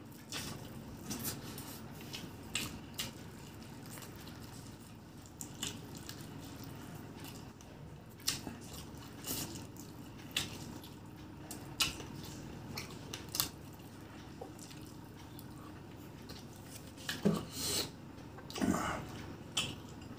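Close-miked eating sounds of a man eating chicken biryani by hand: wet lip smacks and chewing clicks scattered throughout, with a cluster of louder wet sounds near the end.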